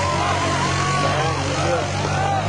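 An ATV engine running steadily as it works through a mud pit, with spectators' voices chattering over it.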